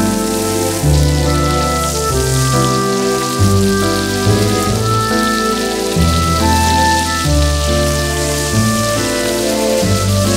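Beef steaks sizzling in foaming butter in a frying pan, a steady hiss, with background music playing over it.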